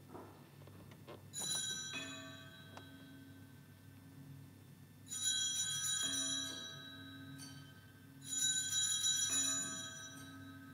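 Altar bells rung by a server at the elevation during the Consecration of the Mass: three separate rings, each a cluster of bright metallic tones that rings on and fades, with a lower tone sounding beneath them.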